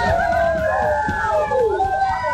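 Chorus of many Konyak warriors' voices chanting together, with long overlapping calls that glide up and down in pitch.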